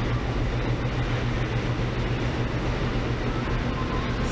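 Steady low rumble and hiss with a constant low hum underneath, even throughout, with no distinct events.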